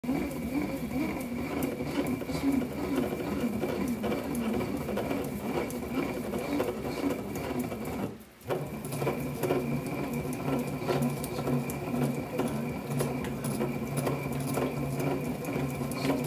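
Hand-turned bat-rolling machine running a DeMarini CF Zen composite bat's barrel between its rollers, a steady rolling sound full of small clicks and crackles as the barrel is squeezed to break it in. The sound drops out briefly about eight seconds in, then picks up again.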